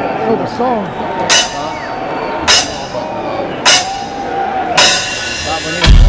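A drummer's count-in: four evenly spaced ringing metallic strikes about a second apart over a murmuring arena crowd, then the band crashes in with a loud heavy hit at the very end.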